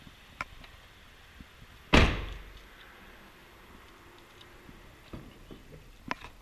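The 2006 Jeep Commander's rear liftgate slammed shut about two seconds in: a single loud thud with a short ringing tail. A faint click comes just before, and a lighter knock about five seconds in.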